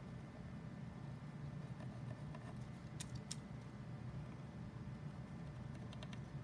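Faint quiet room with a steady low hum, and a white gel pen tip ticking twice on cardstock about three seconds in as short stitch dashes are drawn.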